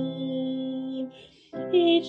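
A woman singing a hymn with upright piano accompaniment. A held note and chord end about a second in. After a short pause the voice and piano start the next line.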